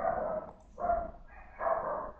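A dog barking three times, about a second apart, quieter than the voice.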